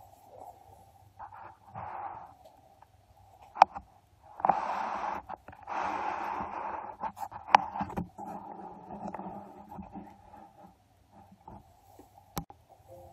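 Breathy hissing and rustling close to the microphone, loudest in two bursts near the middle, with a couple of sharp clicks over a steady low hum.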